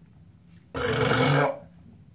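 A man's loud burp, lasting under a second and starting just before the middle, after a swig of malt liquor.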